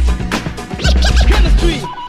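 Hip hop beat with DJ turntable scratching: a scratched sample's pitch sweeps up and down in quick arcs over heavy bass drum hits. Near the end the beat stops and a steady tone begins.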